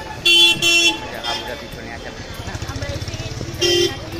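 A vehicle horn beeps twice in quick succession, then once more near the end. Under it is the low, fast putter of a small engine running close by in the second half.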